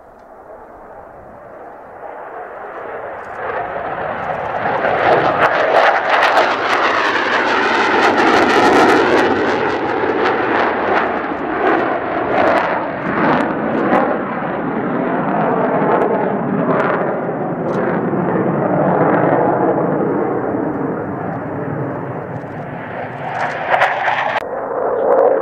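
Twin J79 turbojets of an F-4EJ Kai Phantom II in a steep high-rate climb just after takeoff. The jet noise swells over the first few seconds to a loud, ragged crackling in the middle, then holds a little lower as the aircraft climbs away.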